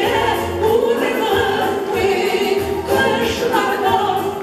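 Three women singing a Tatar song together into microphones, over a musical accompaniment with a steady bass line.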